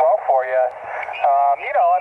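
A voice received over a 10-meter single-sideband radio through the Yaesu FT-818 transceiver's speaker: thin, narrow-band speech cut off at top and bottom, typical of an SSB signal.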